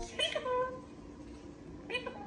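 African grey parrot calling: one short call with a gliding pitch, then a brief second call near the end.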